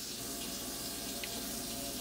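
A steady, even hiss with a faint hum beneath it.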